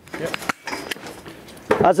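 Sheep ear-tag applicator pliers closing a small round EID tag through the ear: one sharp plastic click about half a second in as the tag snaps shut, then softer clicks and handling rustle as the jaws spring apart.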